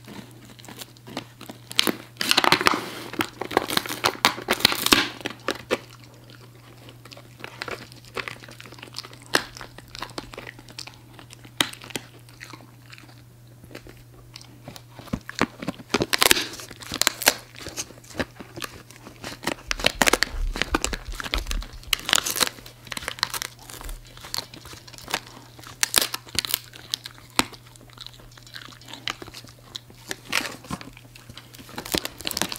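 Siberian husky chewing a large, thin, dry flat treat: irregular crackly crunching and biting. The crunching comes in louder bouts about two to five seconds in and again from about sixteen seconds on, and is quieter in between.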